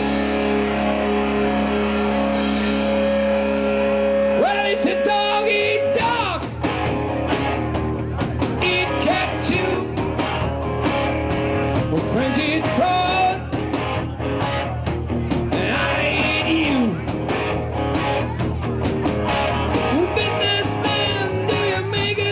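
Live rock band with electric guitars, bass and drum kit. It opens on a held, sustained chord, then about six seconds in the full band starts a song with a male lead singer.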